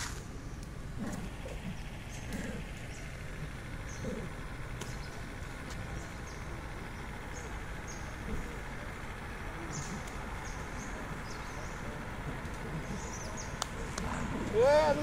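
Outdoor ambience: a steady low rumble with many short, high chirps scattered throughout.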